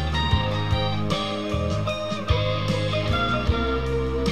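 Electric guitar playing a blues lead over a backing track with bass and drums, one note bent about halfway through.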